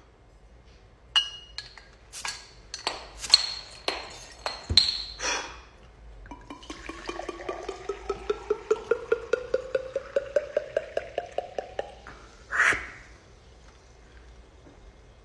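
Several sharp glass clinks with a short ring, then water poured from a bottle into a tall glass for about six seconds, glugging in quick even pulses while the pitch rises steadily as the glass fills. A short breathy burst comes near the end.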